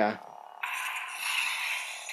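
Electronic Kylo Ren toy lightsaber sound effect: a steady hissing crackle that cuts in abruptly about half a second in.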